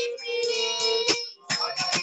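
Bengali devotional song: singing over instrumental accompaniment, with sharp percussion strikes every fraction of a second and a brief drop-out about two-thirds of the way through.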